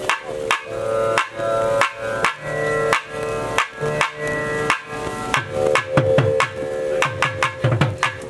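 Tamil temple periya melam music: a nadaswaram playing a melody over a steady held drone, with sharp, frequent thavil drum strokes throughout.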